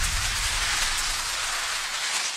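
A rushing, hissing noise sound effect, steady and then slowly dying away, with a low rumble at the start.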